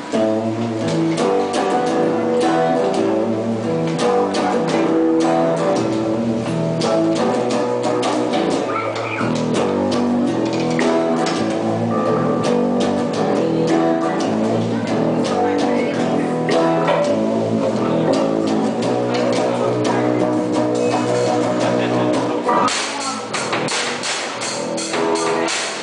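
A live rock band kicking straight into an instrumental section: electric guitar, bass guitar and drum kit playing together at full volume, with a short break just before the end.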